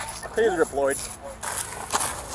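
Two short shouted cries during a struggle on the ground, then rough rustling and scraping of clothing against a police body camera.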